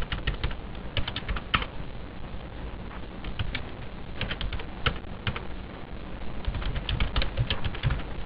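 Computer keyboard typing in several short bursts of keystrokes with pauses between.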